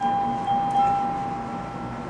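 Electronic tones from a baby's musical plush toy: a held note, joined by a higher one about a second in, over a steady low hum.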